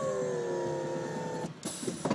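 An electric motor worked from a console switch in a storm-chasing Chevrolet, whining steadily with its pitch easing slightly downward. It stops about a second and a half in, followed by a short rushing noise.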